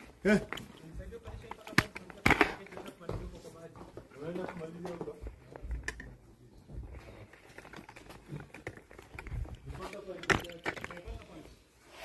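Quiet, indistinct talking, with a few sharp knocks: one near the start, one about two seconds in and one near the end.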